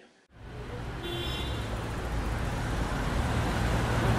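Steady city street traffic noise, a low rumble of vehicles that comes in suddenly just after the start, with a brief faint high tone about a second in.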